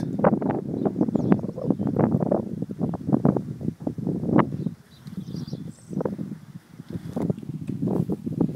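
Breeze buffeting the microphone outdoors: an uneven run of rumbling gusts and rustles, easing off briefly about five seconds in.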